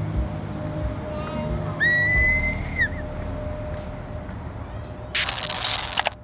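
A train conductor's departure whistle blown once, a steady high note lasting about a second, a couple of seconds in, over a low background rumble. Near the end comes a short burst of hiss.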